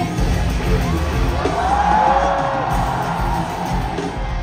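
Loud live pop music from a concert sound system, with a heavy, even bass beat and a crowd cheering over it; a long sliding note rises and falls about halfway through.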